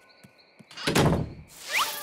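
A door shutting with a single heavy thunk about a second in, a cartoon sound effect, followed near the end by a short rising glide of tones.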